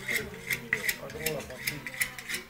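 Butchering knife working on a pig carcass: quick repeated metal strokes, a few a second, each with a short ring.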